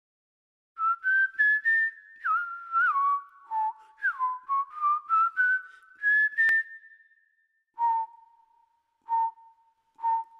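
Jingle intro: a high, whistle-like melody of quick notes stepping up and sliding down in pitch, each trailed by a faint echo, thinning near the end to single repeated notes about a second and a half apart.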